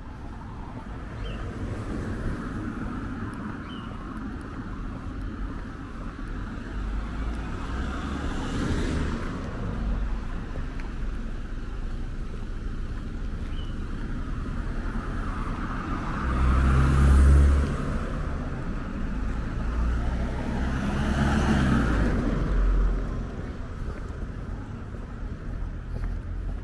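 Outdoor street sound with cars passing one at a time: one swells and fades about a third of the way in, the loudest passes about two-thirds of the way in, and another follows a few seconds later. Under them is a steady low rumble.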